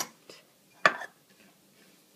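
Sharp clinks of glass and wire as the bail clasp of a swing-top glass jar is released and its glass lid swung back onto the tiled counter: a click at the start and a louder clink just under a second in, with a brief ring.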